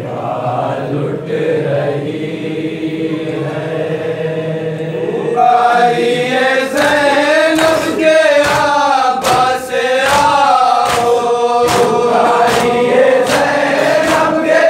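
A group of men chanting a nauha, a Shia lament, together. About five and a half seconds in the chant rises in pitch and gets louder. From then on, sharp even strokes of hands beating on chests (matam) keep time, about two a second.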